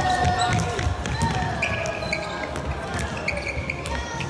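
Futsal ball being kicked and dribbled on an indoor hall floor: a run of sharp knocks, echoing in a large sports hall with voices calling around it.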